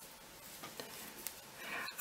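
Faint handling sounds of hand knitting: wooden knitting needles ticking softly against each other while the yarn is worked, a few light ticks in all.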